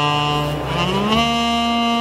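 ROLI Seaboard playing a held synth chord. About half a second in, the notes slide smoothly up in pitch into a new chord, which then holds.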